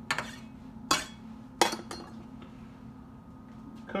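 A knife clinking and tapping against a cooking pot about four times in the first two seconds as chopped onion is pushed off it into the pot.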